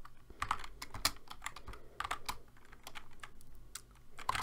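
Typing on a computer keyboard: an irregular run of separate keystrokes while code is entered.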